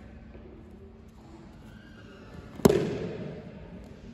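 A judoka thrown by a ko-uchi-gari (minor inner reap) lands on his back on judo tatami mats: a single sharp slap-thud about two and a half seconds in, echoing briefly in the hall.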